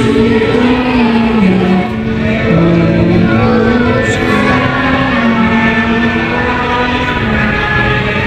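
A group of schoolchildren singing together in unison, a slow melody with long held notes.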